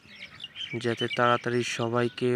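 A man speaking, his voice filling most of the stretch, with faint high chirping underneath in the first half second.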